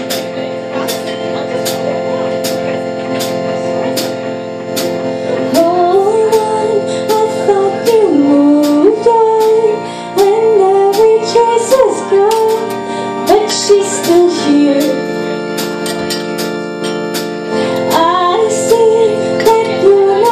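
Live band playing a song: held keyboard chords over a steady drum beat, with a woman singing a melody that comes in about five seconds in, pauses briefly past the middle, and returns near the end.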